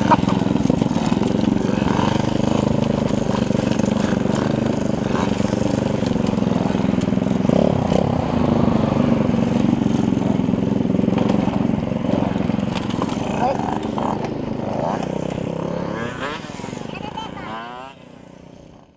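Honda Monkey-style minibike's single-cylinder engine running while being ridden, its pitch wavering up and down with the throttle, then dropping away and getting quieter near the end.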